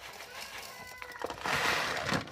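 Sea salt poured from a plastic bag into a food processor bowl over basil leaves: a grainy hiss of salt falling, louder in the second half, with the bag crinkling.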